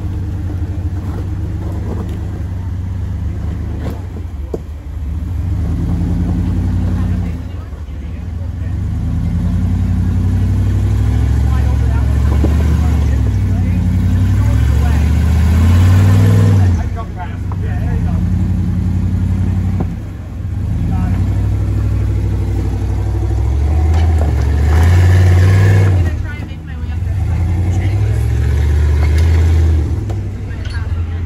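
Rock-crawler buggy's engine revving in repeated surges as it climbs a rock ledge, the pitch rising and falling with the throttle and dropping off briefly a few times between pushes. The strongest surges come about halfway through and again near the end.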